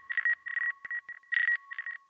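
Electronic segment-transition sound effect: a steady high beep tone with a fainter lower tone beneath it, chopped up by rapid, irregular bursts of static.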